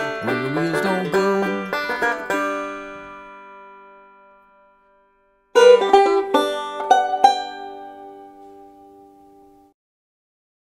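Five-string banjo picked in three-finger bluegrass style ends a tune on a chord struck about two seconds in, which rings and dies away. After a few seconds of silence, a short plucked banjo phrase starts about halfway through and rings out.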